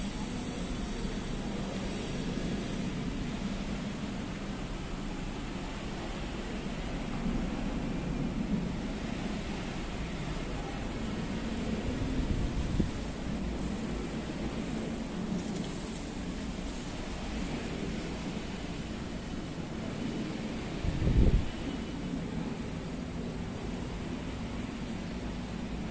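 Steady low rumbling background noise, with a brief louder low thump near the end.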